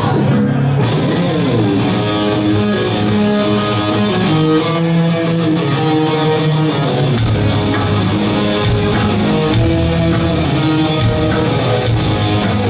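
Live hard rock band opening a song: an electric guitar riff with a slide near the start, a low bass part coming in around four and a half seconds, then the drums with regular hits joining about seven seconds in, played loud through the amplifiers.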